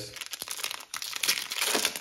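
Foil Magic: The Gathering booster pack wrapper crinkling and crackling in the hands as its top strip is torn off, the crackle getting denser in the second half.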